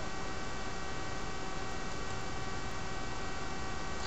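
Steady electrical mains hum and hiss, with several faint steady tones; no speech.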